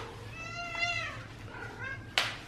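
A pet cat meowing: one long arching meow, then a short rising call near the end.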